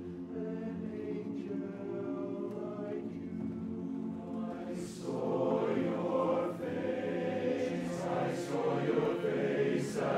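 Men's barbershop chorus singing a cappella in close four-part harmony: soft held chords that swell louder about halfway through.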